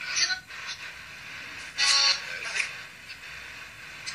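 Spirit box hissing steadily, with two short, thin bursts of radio sound breaking through: one right at the start and one about two seconds in. These are the fragments taken as spirit replies.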